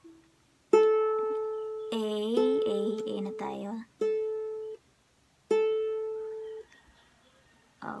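A ukulele's A string plucked about four times and left to ring out while it is tuned against a clip-on tuner, the note holding steady near A. A brief wavering voice sound comes in between the plucks.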